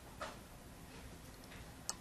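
Quiet room tone broken by a single sharp click just before the end: a computer click as the projected browser page changes. A faint, brief sound comes shortly after the start.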